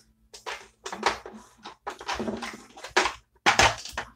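Plastic lip gloss tubes clicking and clattering as they are picked out of a drawer, in a string of irregular knocks.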